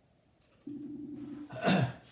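A man clearing his throat near the end, just after a short, steady hum lasting under a second.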